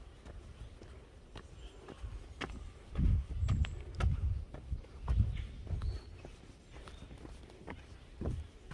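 Footsteps of a walker on a dirt forest trail, with a run of heavier, louder thuds from about three to six seconds in.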